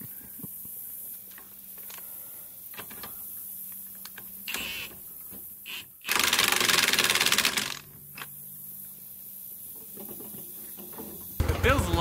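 Milwaukee cordless impact wrench hammering the nut onto a mud motor's propeller shaft, a rapid rattling burst of about a second and a half midway through. Near the end the Mud Buddy 50 hp mud motor is heard running at idle.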